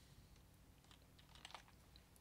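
Faint computer keyboard typing: a scattered run of soft key clicks over a steady low electrical hum.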